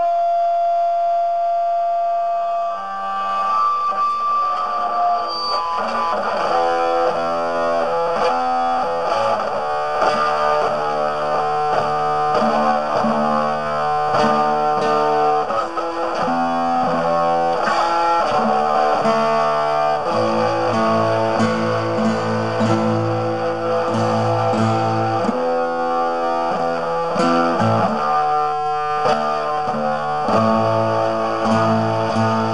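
Instrumental music led by guitar played through effects, holding sustained notes. A lower bass part builds in during the first several seconds and deepens about two thirds of the way through.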